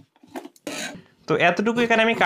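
Large steel tailor's shears cutting across a strip of fabric on a cutting table: a few light clicks and a short rustle as they are taken up, then from about halfway in a loud, pitched metallic scraping of the blades as they close through the cloth.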